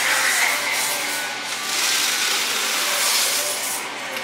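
Espresso machine steam wand hissing as it froths milk in a steel pitcher, a steady noise that swells through the middle.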